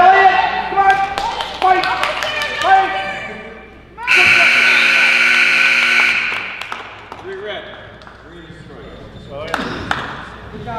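Spectators shouting during a wrestling bout. About four seconds in, a gym scoreboard buzzer sounds steadily for about two seconds and cuts off, marking the end of a wrestling period. Quieter voices follow.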